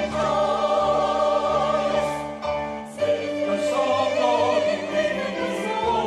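Mixed church choir singing an anthem in parts with piano accompaniment, pausing briefly between phrases about two and a half seconds in, then continuing.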